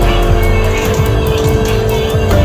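Music with a steady beat and heavy bass.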